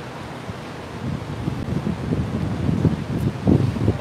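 Wind buffeting the microphone: a steady hiss with irregular low rumbling gusts that grow stronger about a second in.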